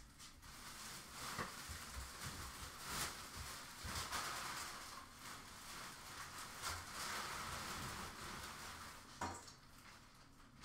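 Faint rustling and handling noise, with a few light clicks and knocks scattered through it.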